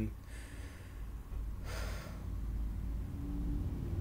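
A man breathing audibly: a faint breath near the start and a louder intake of breath about two seconds in, over a low steady hum.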